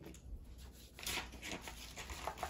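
Hands handling papers and small wrapped items on a table: paper rustling with light taps, growing busier and louder about a second in.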